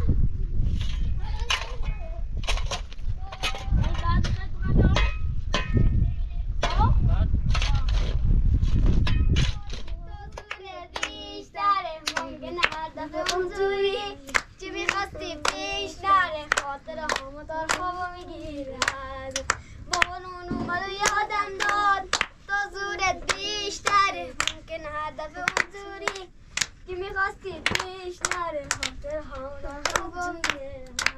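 Boys singing together and clapping their hands in a steady rhythm. Before that, for about the first ten seconds, a louder low rumble with scraping knocks as a shovel works gravel and rubble.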